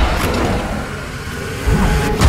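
Loud battle sound effects in a film trailer: a dense rush of noise over a deep rumble, with a new low surge near the end.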